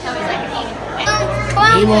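Children's voices and chatter, with a steady low hum that starts about a second in.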